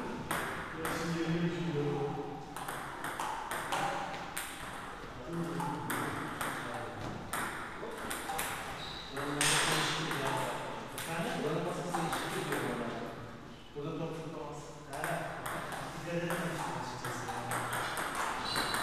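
Table tennis rally: a celluloid ball struck back and forth with rubber paddles and bouncing on the table, a quick run of sharp pings and clicks, over steady chatter of voices.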